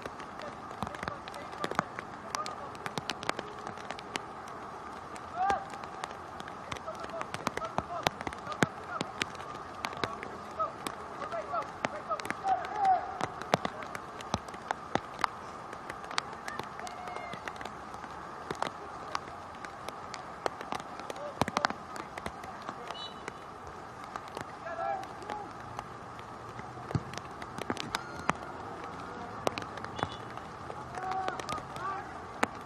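Indistinct, distant calls and shouts of soccer players and spectators, with many sharp, irregular clicks scattered throughout.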